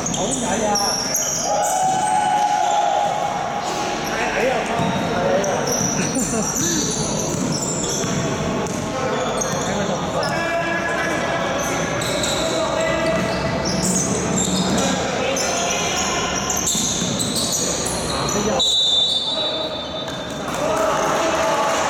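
Basketball game sounds in a large indoor hall: the ball bouncing on the court amid players' and spectators' voices, all echoing in the hall.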